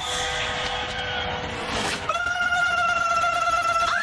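Cartoon characters' voices shrieking: a lower cry held steady through the first half, then a higher, louder scream held from about halfway through.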